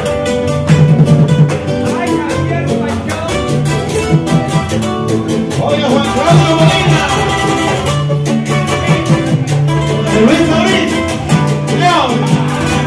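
Live acoustic trio playing an instrumental break of a paseo: acoustic guitars picking a melody over a steady low bass line and an even rhythmic beat, with no singing.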